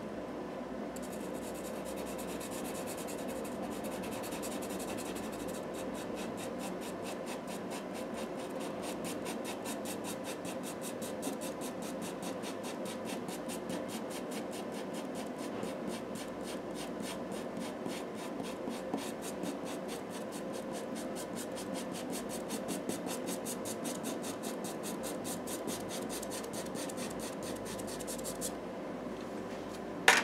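A Stabilo CarbOthello chalk-pastel pencil scratching on toned paper in rapid, even hatching strokes. The strokes stop shortly before the end.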